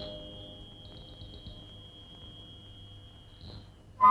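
A quiet stretch of an old film soundtrack: the last of the music fades away under a steady, thin high tone. A few faint chirps sound over it, including a quick run of about six near the one-second mark.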